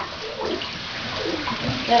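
Water from a hand-held shower hose running steadily onto a chow chow puppy being rinsed in a bathtub of water.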